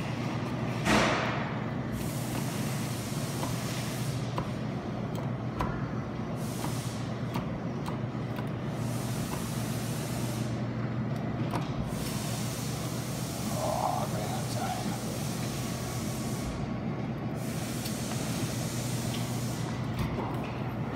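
Arcade claw machine running through a grab: a steady electric hum with a whirring motor noise that rises and falls as the claw moves, and a short sharp noise about a second in.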